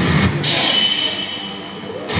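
Animated explosion sound effect played through a hall's speakers: a rumbling blast, joined about half a second in by a steady high tone, fading toward the end.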